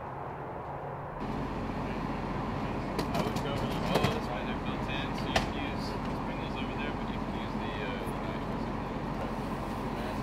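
A large emergency truck's engine idling steadily, with people talking at a distance and a few sharp knocks in the middle.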